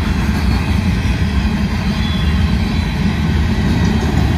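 Covered hopper cars of a freight train rolling past at close range: a steady, loud, low noise of steel wheels running on the rails.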